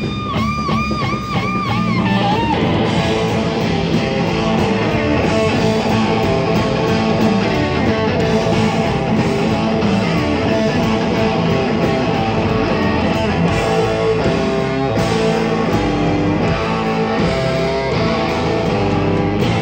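Live blues band playing instrumentally: an electric guitar holds a wavering, repeatedly bent note, then drums and the rest of the band come in fully about two seconds in and carry on at a steady, loud level with the guitar leading.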